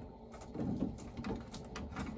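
A few light clicks and scrapes from the air vent cap on a tankless water heater's circulator pump being unscrewed.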